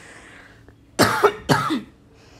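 A woman coughing twice in quick succession, about a second in, the two coughs half a second apart.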